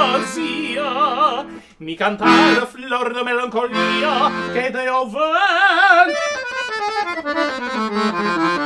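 Weltmeister piano accordion playing a melodic gypsy-jazz run over chords, with a short break a little under two seconds in before the phrase carries on.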